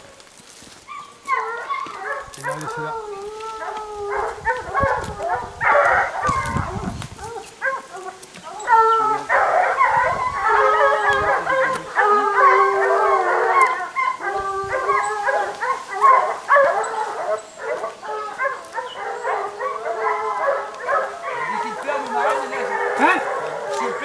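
A pack of boar hounds baying in chorus, many overlapping voices, the sign of dogs on a wild boar's trail. The baying is sparse for the first few seconds and swells into a thick, continuous chorus from about nine seconds in.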